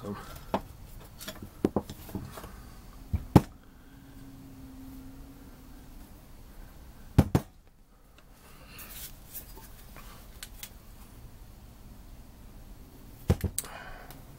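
Metal brake master cylinder parts handled and set down on a workbench: scattered sharp knocks and clinks, the loudest about three and a half and seven seconds in, with a quick cluster near the end.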